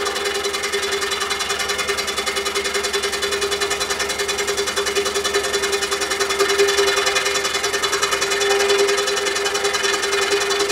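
Scroll saw running steadily with a rapid, even reciprocating chatter and hum, its blade cutting into a short piece of hardwood broom handle.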